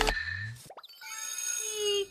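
Sound effects for an on-screen subscribe-button graphic: a pop and a click-like sweep, then a bright ringing chime of several held tones.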